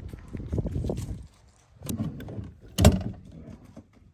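Irregular knocks and thumps from handling gear on a small boat, with one sharp, loud knock nearly three seconds in.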